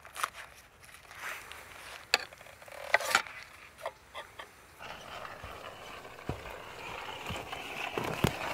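Stainless steel box pot and paper wrapping being handled as a cake is lifted out onto a plate, giving a few light metal clinks and knocks with paper rustling. From about five seconds in there is a steady hiss.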